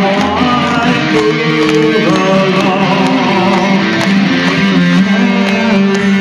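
A melodic death metal band playing live, heard from the crowd: electric guitars carry a melody over a sustained low note.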